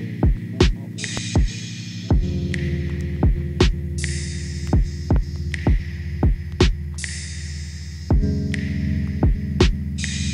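Instrumental lofi hip-hop beat: a deep kick drum whose pitch falls on each hit, repeating in a steady groove over sustained low synth chords. The chords change about two seconds in and again near the end, and a bright hiss swells in every three seconds and fades away.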